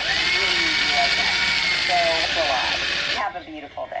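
Craftsman cordless drill running, its bit grinding into a glazed ceramic pot. The motor whine rises as it spins up just after the start, then holds steady. The drilling stops suddenly about three seconds in.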